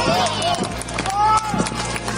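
Shouts and calls from players and spectators around a football pitch just after a goal, one long drawn-out call about a second in, over a steady low hum.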